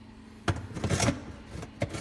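Plastic dishwasher filter parts knocking and scraping as the cylindrical filter is pushed back into the sump. A sharp click comes about half a second in, then a short cluster of rattles, and another click near the end.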